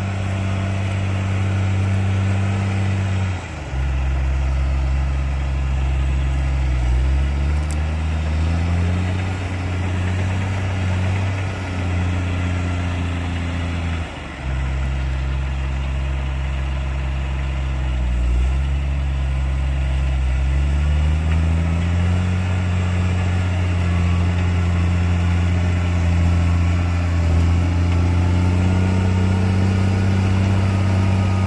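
JCB Fastrac 3230 tractor engine running under load as it pulls a rear-mounted rotary tiller through the soil. Its note drops sharply twice, about a third of the way in and again near the middle, then climbs back slowly each time.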